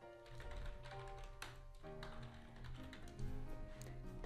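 Computer keyboard typing, a scattered run of key clicks, over quiet background music of held notes.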